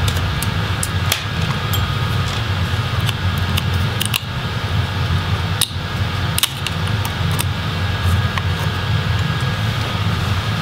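Small Phillips screwdriver working the screws that hold a laptop's graphics card, giving scattered light metallic clicks and ticks, over a steady low mechanical hum like a fan.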